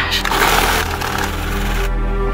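Film soundtrack: a harsh, dense noisy rush lasting almost two seconds and cutting off abruptly near the end, over a steady low music drone.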